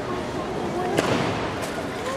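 A single sharp bang about a second in, the gymnast's feet striking the springboard at the vault takeoff, over a steady background of spectator chatter.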